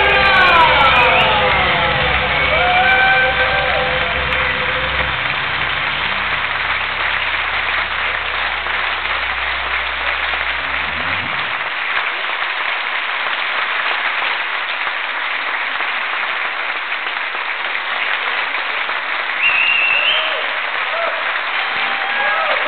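Concert audience applauding as a live band finishes. The band's last notes slide down and fade in the first seconds, a low sustained note runs on to about halfway, and steady applause fills the rest, with a brief high whistle near the end.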